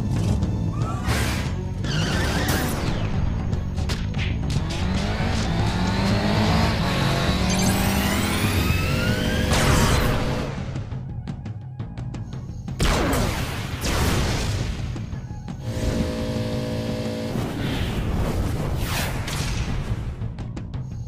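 Cartoon action soundtrack: music mixed with motorbike sound effects, a rising engine whine that builds to a peak about ten seconds in, followed by several sharp whooshes.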